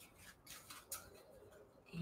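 Faint rustling and a few light taps of paper scraps being handled and lined up against each other.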